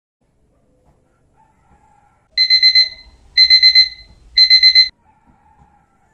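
Digital alarm clock beeping its wake-up alarm: three bursts of quick high pips, one burst a second, starting a little over two seconds in.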